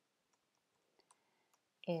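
A few faint, sharp clicks from a computer keyboard and mouse while code is edited, in a near-silent room; a man starts speaking near the end.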